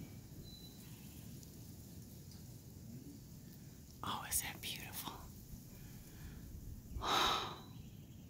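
Faint breathy whispering from the person filming: two short whispered bursts, one about four seconds in and one about seven seconds in, over a quiet low background rumble.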